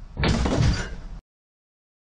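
A man falling onto the wooden steps and against the door of a backyard workshop shed: a loud crash lasting about a second that cuts off suddenly.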